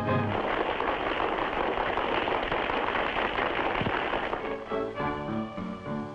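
Audience applauding for about four seconds after a band's closing chord at the start. Music comes in near the end as the clapping fades.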